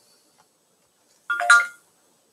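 A short electronic chime of a few steady tones, like a phone or computer notification, about one and a half seconds in; otherwise near silence.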